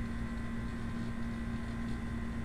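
Steady low hum with faint background noise, unchanging and with no distinct events.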